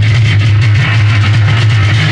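Noise rock recording: loud, dense distorted electric guitar noise over a steady low drone.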